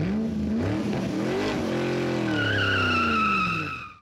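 Car engine revving, its pitch climbing to a peak about a second and a half in and then falling away, with a tyre squeal joining a little past halfway; both stop abruptly at the end.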